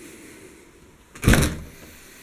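Back door being opened: one brief loud sound a little over a second in that fades quickly, over faint room noise.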